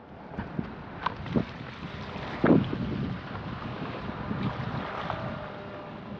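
Wind buffeting the microphone over small waves washing against breakwall rocks, a steady rushing noise, with a few faint clicks and one louder knock a little under halfway through.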